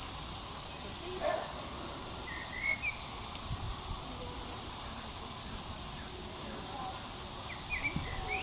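Pond-side outdoor ambience: a steady high hiss, with a short rising double chirp from a bird about two and a half seconds in and a brief lower call a little after one second.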